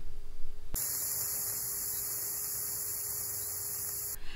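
Steady electrical hiss over a low mains hum. The hiss switches on abruptly about a second in and cuts off suddenly at the end.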